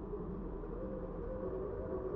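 A low, steady ambient drone with faint held tones that come in about a second in.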